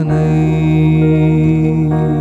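Yamaha PSR-S975 arranger keyboard sustaining a steady chord over a low held note, accompanying a slow worship song between sung lines.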